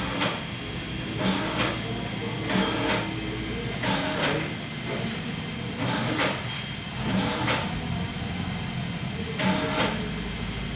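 A hand-held thermal inkjet printer is rolled across a plastic bag: its rollers rumble and the plastic rustles, with irregular sharp clicks and knocks about once a second.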